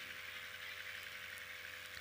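Faint steady hiss with a low hum and a thin steady tone, the background noise of a microphone and public-address system with no one speaking.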